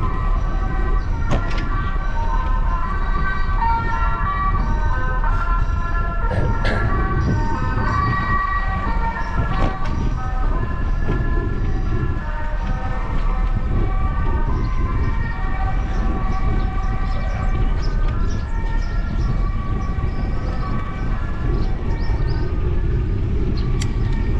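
Wind rumbling steadily on a bicycle-mounted GoPro's microphone as the bike rolls along a village lane, with many short high chirps from small birds scattered over it and a few sharp clicks.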